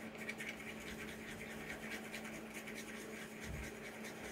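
Wooden stir stick scraping around inside a small plastic cup, stirring white pigment into epoxy resin: faint, quick, uneven scratching strokes over a low steady hum.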